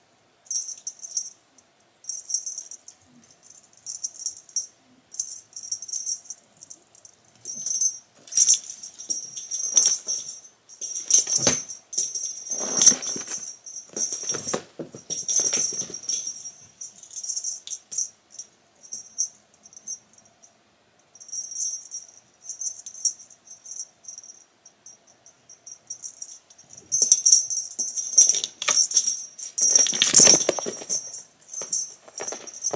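A cat wand toy being flicked and swatted, its high, jingly rattle coming in repeated bursts as cats chase and pounce on it. There are heavier scuffles in the middle and again near the end.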